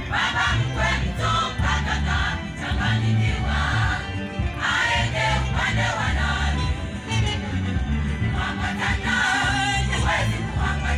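A women's choir singing together into microphones, amplified through loudspeakers, over a heavy bass accompaniment that runs without a break.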